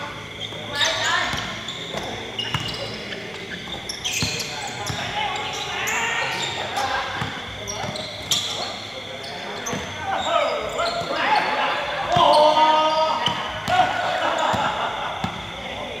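Basketball bouncing on a hard court in repeated sharp thuds, with players' voices calling out over the play, loudest about twelve seconds in.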